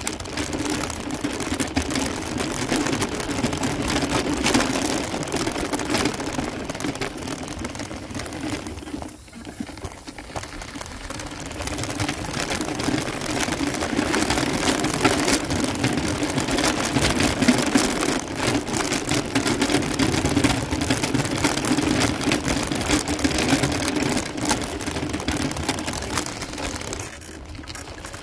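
Wheels rolling over a gravel and dirt road, crackling steadily under a small motor's even whir. There is a brief lull about nine seconds in.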